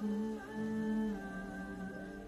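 A man humming a slow tune in three long held notes, the last one a step lower.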